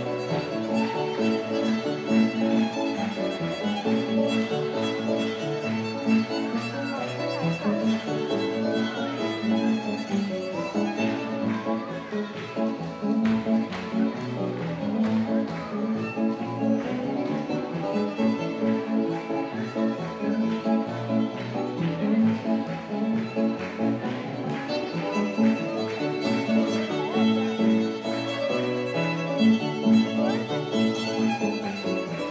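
Live fiddle instrumental with piano accompaniment: a continuous tune over a steady rhythm of changing notes.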